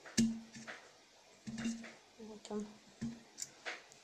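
Tomatoes being laid into a three-litre glass jar: about six knocks against the glass over four seconds. Several are followed by a short low tone, each at the same pitch.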